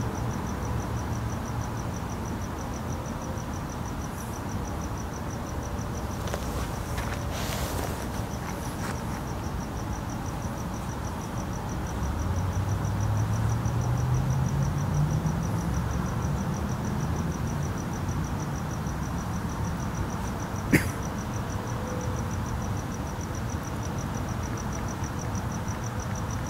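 Crickets chirping steadily in a fast, even high pulse over a low traffic rumble. About halfway through, a vehicle's engine rises in pitch as it drives past. Near the end comes one sharp click.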